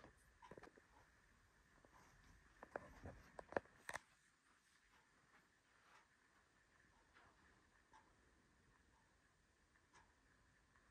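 Near silence: faint room tone, with a handful of faint clicks and taps in the first four seconds.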